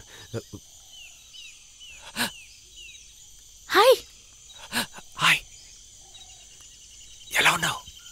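Sparse film dialogue: a few short spoken exclamations, one with a sliding pitch about halfway through, over a quiet outdoor background with a steady high hum. In the first few seconds there is a run of five or six short, high, falling chirps about half a second apart.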